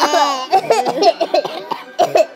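A child laughing in a quick run of short, choppy laugh syllables.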